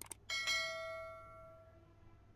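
Subscribe-animation sound effect: a couple of quick clicks, then a notification bell chime struck twice that rings and fades away over about a second and a half.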